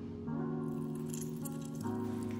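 Background music of soft held chords, the chord changing about a quarter second in and again near the end.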